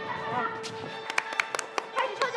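Quick hand claps, about five sharp claps in a row in the second half, over steady background music with a held tone.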